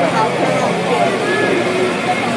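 Overlapping chatter of many people in a large ballpark, with no single voice standing out, over a steady low hum.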